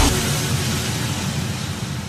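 Dance music stops abruptly, leaving a steady hissing noise with a low rumble underneath that slowly fades out.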